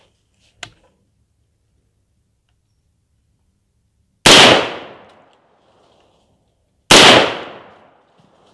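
Two shots from a 5.56 mm AR-style semi-automatic rifle, about two and a half seconds apart, each ringing out and fading over about a second. A faint click comes just over half a second in.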